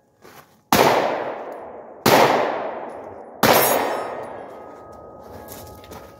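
Three pistol shots from a 9mm Glock 43, about 1.4 seconds apart, each ringing out in a long echo that fades slowly before the next.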